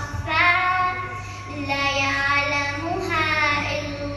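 A young girl singing a nasheed in Arabic, solo, holding long notes with wavering, ornamented bends in pitch and short breaks between phrases.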